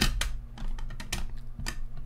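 Hard plastic graded-card slabs clicking and clacking against each other as they are handled: a quick, irregular run of sharp clicks.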